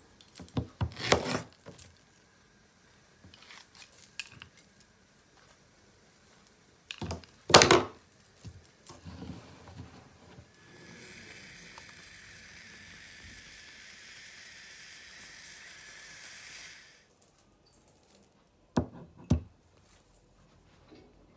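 Knocks and thumps of fruit and utensils handled on a plastic cutting board while produce is prepared. A steady hiss runs for about six seconds in the middle.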